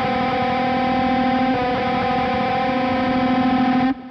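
Distorted electric guitar sounding just two notes a semitone apart, a dissonant minor-second interval. It is held ringing and cut off sharply near the end.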